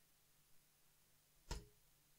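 Near silence: room tone, broken by a single short click about one and a half seconds in, a computer mouse button clicking.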